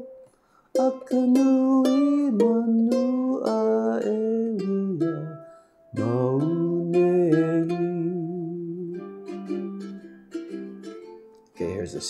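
A man singing a Hawaiian-language song in the key of F, accompanying himself on a cutaway ukulele built by Nathan Ching, strumming F, B-flat and C7 chords. The line closes on a long held note with vibrato.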